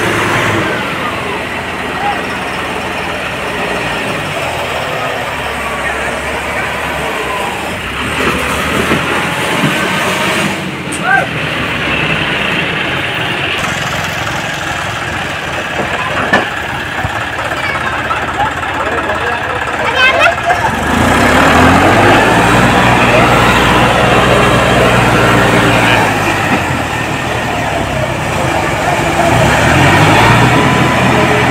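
John Deere 5405 tractors' diesel engines running as the tractors drive slowly on the road, with people's voices mixed in. About two-thirds of the way through the engine sound gets louder and fuller as a tractor comes close and is given more throttle.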